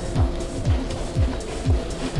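Background music with a steady bass-drum beat, about two beats a second, over sustained tones.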